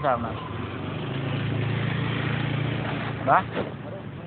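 A motor vehicle passing close by: a low engine hum that swells for a couple of seconds and then fades.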